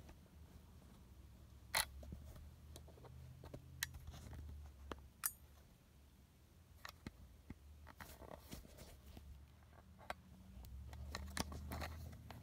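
Camera tripod being handled and repositioned: scattered clicks and knocks, the loudest about two seconds in and a cluster near the end, over a faint low hum.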